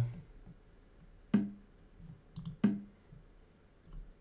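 Two sharp move sounds from online chess software, about a second and a quarter apart, each a clack with a short low ring: the opponent's move and the reply. Two light mouse clicks come just before the second.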